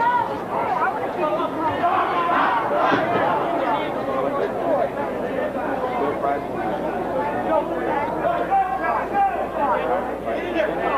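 Tournament crowd of spectators and coaches talking and calling out over one another, a continuous babble of many voices.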